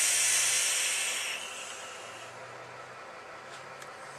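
Airy hiss of a hit taken on a dual-18650 parallel mechanical box mod firing a 0.12-ohm coil in a rebuildable atomizer, loudest for the first second and a half, then fading away over the next second.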